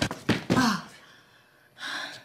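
A woman's pained gasps and a short groan that falls in pitch about half a second in, then a sharp breath near the end.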